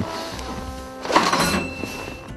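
Background music with held notes. Just over a second in comes a short rattling burst, something shaken in a container, followed by a faint high ring of a small bell inside it.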